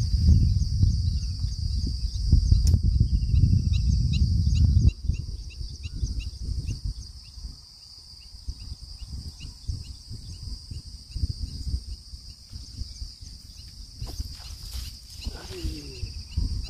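Steady high insect drone from the marsh, with a run of short chirps repeated about three times a second. For the first five seconds a low rumble on the microphone lies under it, then drops away.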